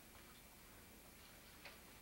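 Near silence: room tone with a faint hiss, and a faint click near the end.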